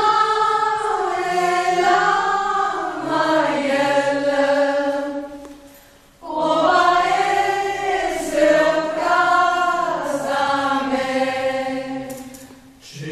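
Mixed choir of women and men singing in sustained harmony, in two long phrases with a brief break about six seconds in.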